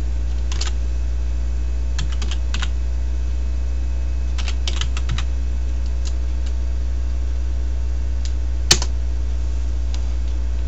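Computer keyboard keystrokes typing a console command, in short clusters of clicks with pauses between, ending in one louder key press near the end that enters the command. A steady low hum runs underneath.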